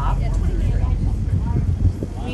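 Steady low rumble of a boat underway on the river, its motor running, with faint voices in the background.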